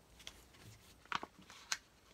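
Pages of a handmade paper album being handled and turned: a faint rustle of paper with two short, sharp paper flicks, a little over a second in and again about half a second later.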